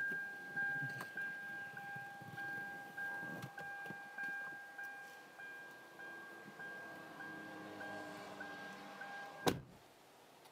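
A car's door-open warning chime, a steady electronic ding repeating a little under twice a second, cut off by a single thump near the end as the car door shuts.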